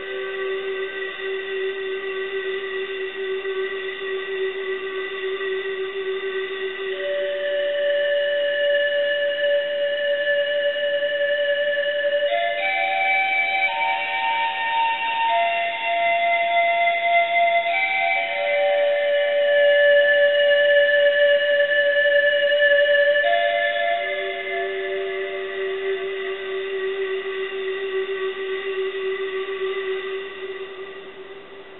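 Nexus² software synth playing a breathy panflute preset in long held notes, with no beat, moving to a new chord about every five or six seconds and swelling louder in the middle before easing back.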